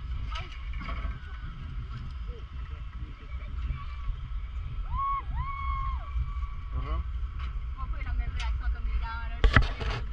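Wind buffeting a body-worn camera's microphone in a steady low rumble while hanging on a bungee cord, with faint voices. Two short rising-and-falling tones come about five seconds in, and sharp knocks sound near the end.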